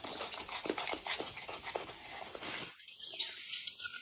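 Utility knife blade cutting and scraping through rigid foam board, a scratchy run of many small crackles that dies down about three seconds in.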